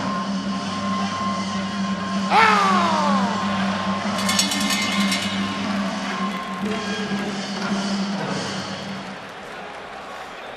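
Ringside music with a steady drone, and a loud falling pitched call about two seconds in. About four seconds in, a rapid run of ringing strikes, the bell ending the round.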